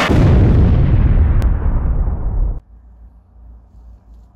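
Intro sound effect: one heavy impact hit with a long fading tail that cuts off sharply about two and a half seconds in, followed by faint background noise.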